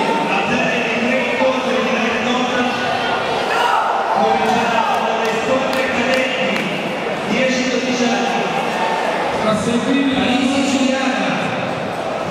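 Many voices from spectators and corners in a large sports hall, several people calling out at once, with the hall's echo.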